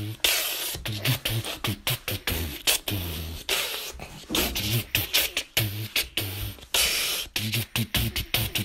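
Beatboxing: a steady rhythm of sharp vocal kicks and clicks, short low hummed bass notes, and longer hissing snare sounds.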